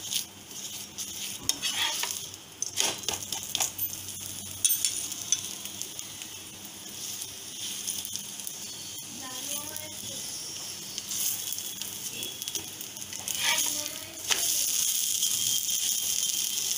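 Oil sizzling under an aloo paratha being shallow-fried in a hot nonstick pan, with a spatula scraping and tapping against the pan in short clusters. The sizzle grows louder near the end.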